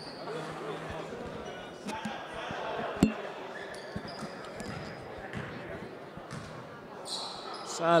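Indoor basketball gym ambience: background voices of players and spectators echoing in the hall, with sneaker squeaks on the hardwood court. One sharp thump, about three seconds in, is the loudest sound.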